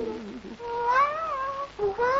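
A meow-like vocal call, long and rising then falling in pitch, with a second, shorter call starting near the end; a lower voice trails off at the very start.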